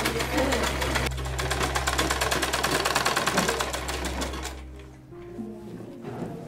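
Sewing machine stitching: a fast, even run of needle strokes that dies away about five seconds in. Soft background music plays underneath.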